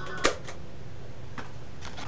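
Handling noise: a few short, sharp clicks and knocks, the loudest about a quarter second in, over a steady background hum, as a hand moves things about and reaches for the camera.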